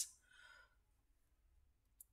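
Near silence in a pause of speech, with one faint, soft breath from the speaker about half a second in.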